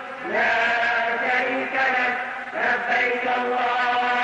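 A man's voice chanting an Arabic religious chant in long, held melodic phrases. Each phrase slides up into its note, one near the start and another about halfway through.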